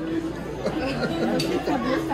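Restaurant table chatter: several people talking at once over a steady hum-like tone.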